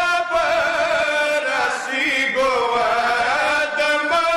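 Men chanting a Shia devotional lament (nauha) into microphones: drawn-out, wavering sung notes with short breaks between phrases.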